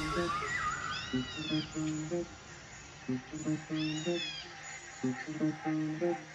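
Quiet stretch of a deep house track: short plucked low notes in a loose rhythm, with two rising-and-falling, cat-like meow calls, one about a second in and one about four seconds in.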